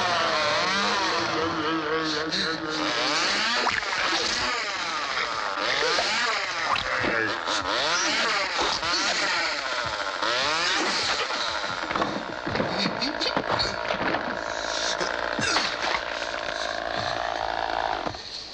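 A chainsaw engine revving up and down over and over, its pitch rising and falling, with voice-like shrieks mixed in.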